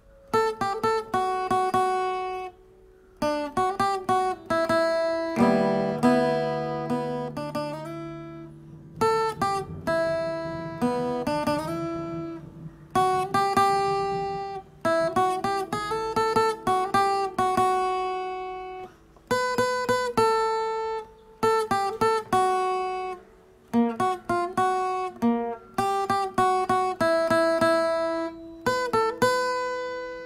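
Solo guitar playing a picked single-note melody in short phrases. The notes ring and fade, some slide in pitch between notes, and a fuller chord rings out for a couple of seconds about five seconds in.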